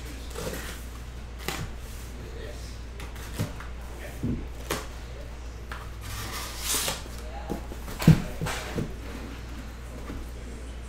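A cardboard shipping case being opened by hand: flaps folded back and cardboard scraping and rustling, with scattered light knocks. A longer scrape comes about seven seconds in, and the loudest knock, a sharp bump, comes just after eight seconds.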